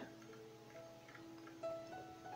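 Faint, soft background instrumental music: single sustained notes entering one after another and held, with a slightly stronger note about one and a half seconds in.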